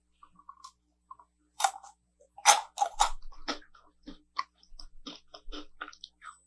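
Maltesers, chocolate-coated malted milk balls, being bitten and chewed: a few loud crunches between about one and a half and three and a half seconds in, then softer, quicker chewing crunches.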